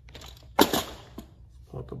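A sharp knock of the cardboard game box and board being handled on a countertop, a little over half a second in, followed by a lighter click.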